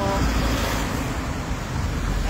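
Street traffic noise: a steady low rumble of road traffic with no distinct events.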